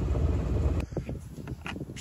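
A sailboat's inboard engine idling with a steady low rumble that cuts off suddenly just under a second in. After that there is quieter open-air sound with light wind on the microphone and a few faint ticks.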